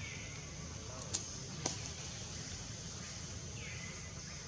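Forest ambience with a steady high-pitched drone, faint short chirping calls near the start and again near the end, and two sharp clicks about half a second apart a little over a second in.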